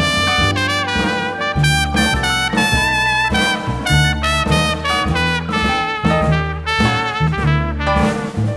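A jazz big band plays an instrumental swing passage, led by its trumpets and trombones over a pulsing bass line.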